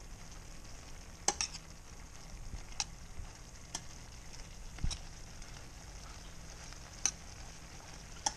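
Shrimp in garlic butter sizzling steadily in a frying pan, with a few short clicks of a utensil against the pan as it is stirred.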